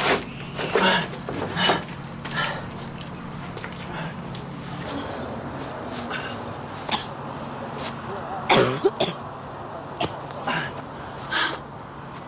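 A man's short, breathy grunts and cough-like exhalations, repeated every second or two, as he strains under a heavy load. The loudest is a voiced groan about two thirds of the way through.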